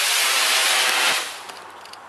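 Black-powder Estes model rocket motor burning at liftoff: a loud, steady hiss that fades away a little over a second in.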